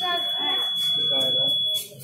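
Long steady high-pitched electronic beep from an electronic voting machine, cutting off near the end: the long beep that signals a vote has been recorded. Voices talk over it.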